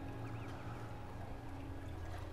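Faint, steady low hum of outdoor machinery, with a light wash of water-like noise.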